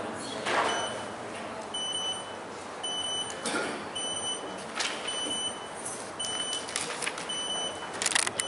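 A high electronic beep repeating about once a second, each beep short and on one pitch, with a few scattered clicks and knocks.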